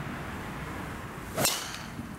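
A golf driver swung at a teed ball: a quick swish ending in a single sharp crack of the clubhead striking the ball, about one and a half seconds in.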